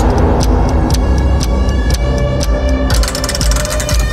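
Tense dramatic background score: a heavy low drone under fast repeated percussive hits, with high sustained tones joining about halfway through.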